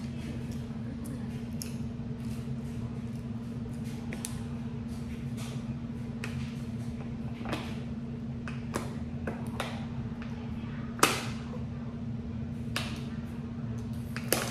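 Thin plastic water bottle crackling as it is squeezed and tipped up to drink: a scatter of sharp clicks, with one louder snap about eleven seconds in, over a steady low hum.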